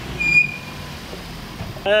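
Small hatchback car pulling away along a street, its low engine and road rumble steady, with a brief high-pitched squeal about a third of a second in. Laughter starts near the end.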